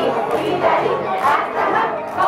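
A crowd of many voices shouting and calling out together, overlapping with chatter.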